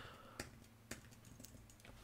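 A few faint, separate computer keyboard keystrokes clicking, about five spread over two seconds.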